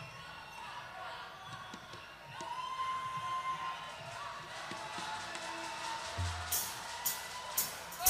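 Quiet lull between songs at a live concert in a large venue: faint stage and audience sounds, a low bass note about six seconds in, and a few sharp high taps about two a second near the end, just before the band starts playing.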